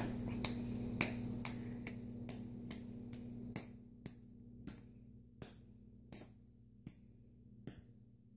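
Wet hands patting and slapping a ball of soft modelling clay, one sharp slap about every half second, coming more slowly in the second half.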